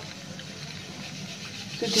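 Curdled milk and whey being poured through a cloth-lined strainer, a faint pouring sound over a low steady hum, with a loud rushing hiss starting right at the end.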